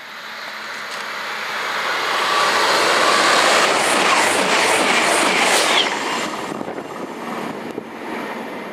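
High-speed express passenger train passing at speed without stopping. A rushing sound builds for about three seconds to a loud peak, where a quick run of wheel clicks sounds, then dies away fast as the train clears.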